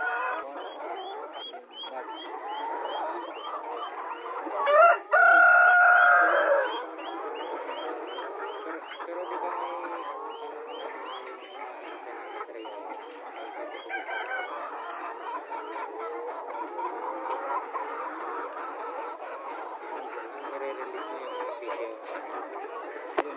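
A mixed flock of backyard chickens, Black Australorp hens among them, clucking continuously. About five seconds in, a rooster crows loudly once for roughly two seconds. Behind them a small high chirp repeats evenly about three times a second through the first two-thirds.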